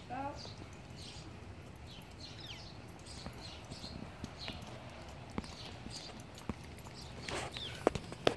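Faint, irregular tapping of a small dog's boots on paving as she trots along.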